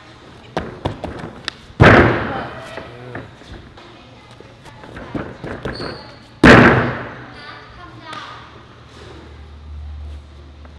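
Two heavy thuds of a barefoot gymnast landing jumps on a low training beam and sprung floor, the first about two seconds in and the second about four and a half seconds later, each echoing through the large gym. A few light taps come just before the first thud.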